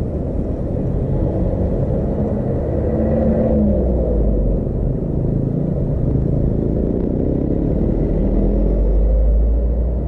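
Road traffic passing close by: motorcycle and truck engines and tyres making a steady low rumble, with one engine briefly revving up about three seconds in. The rumble deepens and grows loudest near the end as a box truck draws alongside.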